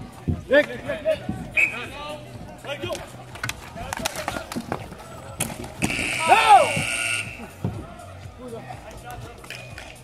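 Ball hockey game: players shouting and calling over background music with a steady beat, with sharp clacks of sticks on the ball. About six seconds in, a shrill whistle blast lasting over a second stops play.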